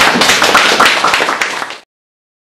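Small live audience clapping, a dense patter of many hands that cuts off abruptly just before the end.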